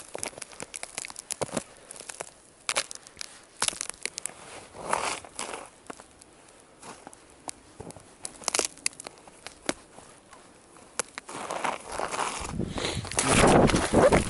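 Boot footsteps crunching through snow on a frozen pond, with scattered crackles. Near the end the crunching grows louder and denser as a foot breaks through the thin snow-covered ice into slush: the ice is not yet thick enough to walk on.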